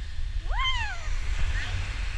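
A single high-pitched vocal whoop that rises and then falls in pitch, over steady low wind rumble on the microphone.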